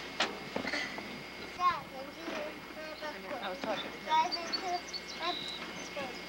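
Indistinct voices talking back and forth, with a couple of sharp clicks right at the start.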